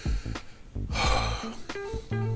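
A man ill with the flu takes one loud breath about a second in, over soft background music with plucked guitar notes.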